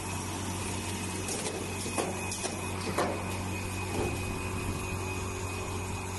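Automatic plug-tray nursery seeding line running: a steady motor hum with a faint high whine, and a few sharp clicks and knocks in the middle.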